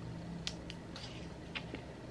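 Plastic screw cap twisted off a small glass shot bottle: a few faint clicks as the seal breaks.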